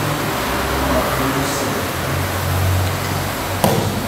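Steady whir of wall-mounted electric fans filling the hall, with one sharp slap about three and a half seconds in.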